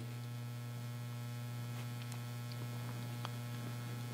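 Steady low electrical mains hum, with a few faint ticks in the second half.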